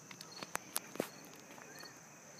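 Quiet outdoor background with a faint, steady high insect drone, and three sharp clicks in the first second from handling of the hand-held camera.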